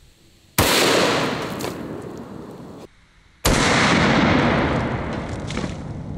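Smith & Wesson 500 Magnum revolver firing a 300-grain hollow point. Two loud gunshot reports about three seconds apart, each a sharp crack followed by a long echo that fades over a couple of seconds; the first is cut off suddenly.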